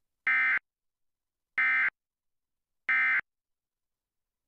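Emergency Alert System end-of-message (EOM) data burst: three short, identical bursts of SAME digital tones, each about a third of a second long and about a second apart, signalling the end of the alert message.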